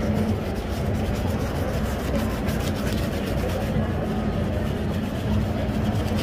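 A brush scrubbing soap lather over a leather shoe in repeated strokes, over a steady low rumble of street traffic.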